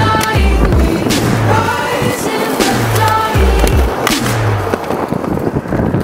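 Skateboard sounds, a board grinding a concrete bench edge and wheels rolling on smooth pavement, mixed under music with a steady repeating beat.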